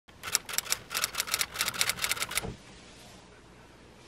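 A rapid run of sharp, bright clicks in quick clusters over the first two and a half seconds, then faint room tone.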